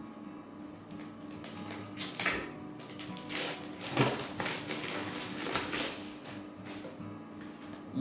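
Plastic wrapping being peeled and pulled off a paperback book, a string of short crinkling rustles, over steady background music.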